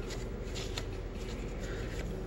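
Stack of cardboard baseball cards handled and flipped through by hand: light rustling and sliding of card against card.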